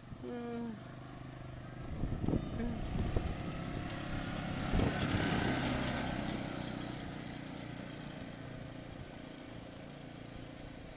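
ATV (four-wheeler quad) engine running as the quad drives past, growing louder to about five seconds in, then fading steadily as it rides away down the street.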